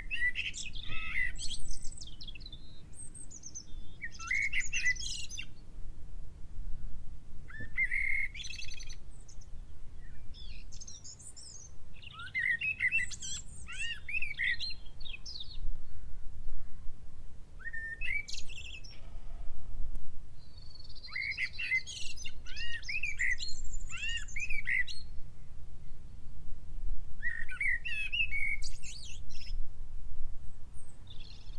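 Songbirds singing in short bursts of quick, sweeping chirps every few seconds, over a low steady background rumble.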